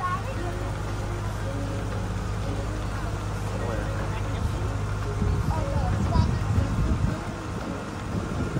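Launch boat's engine running with a steady low drone while the boat cruises, faint voices over it. Wind buffets the microphone from about five seconds in.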